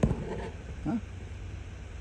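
A man's short questioning 'huh?' about a second in, over a steady low rumble, with a sudden thump at the very start.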